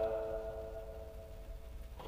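The fading tail of a reciter's held note in Quran recitation, dying away over about a second and a half, then a faint low background hum until the chanting resumes.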